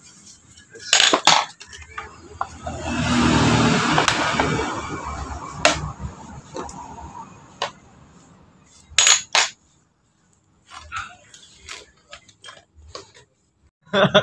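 Small metal motorcycle front-fork parts clinking and knocking together and against a tray as they are handled, with a few sharp clinks and a rough noise of rattling and rubbing lasting about three seconds in the first half; the second half is quieter, with only a few light ticks.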